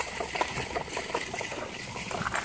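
Stroller being pushed along a path: a low, even rolling noise from its wheels with scattered small clicks and rattles.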